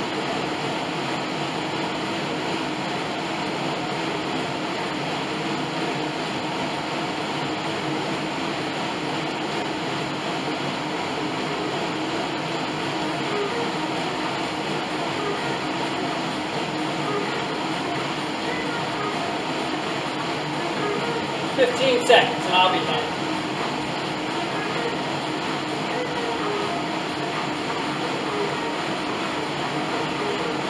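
Bowflex Max Trainer M7's air-resistance fan wheel whirring steadily under continuous stepping, with a faint regular rhythm from the strides. A brief voice-like burst sounds about two-thirds of the way through.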